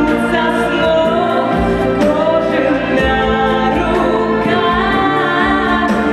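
A girl singing a song into a handheld microphone over instrumental accompaniment, her voice holding long, wavering notes.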